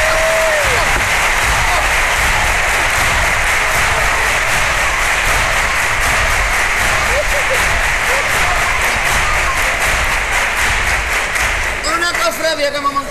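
Audience applauding in a theatre: a dense, steady wash of clapping that thins out near the end.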